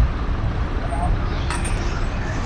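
Steady low rumble of engines and road traffic, with no single event standing out.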